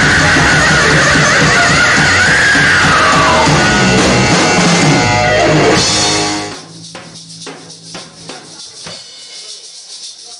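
Live rock band playing loud, with drum kit and electric guitars, until it cuts off about six and a half seconds in. A much quieter passage follows, with light regular percussion strikes about twice a second and a low held tone.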